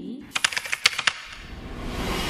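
A quick run of about eight sharp clicks lasting under a second, then a wash of noise that swells toward the end.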